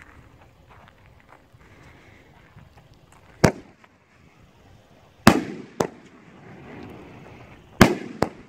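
Alamo Fireworks 'Doom' 500-gram consumer cake firing: after about three seconds of quiet, four sharp bangs of shells lifting and breaking overhead, the loudest about five seconds in and near the end.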